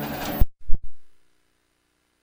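Broadcast field sound cuts off about half a second in, followed by two short low thumps, then near silence with only a faint steady hum as the audio drops out for a break.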